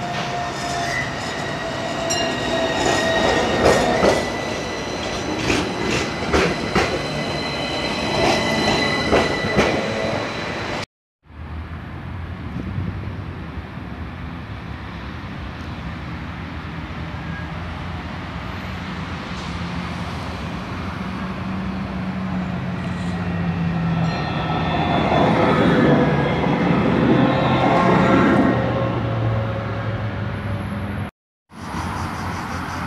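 An Athens tram passing close by, its wheels squealing in steady high whines over a run of sharp clicks from the rails. After a cut about 11 seconds in, another tram approaches with a steady low hum, getting louder toward the end with a faint squeal.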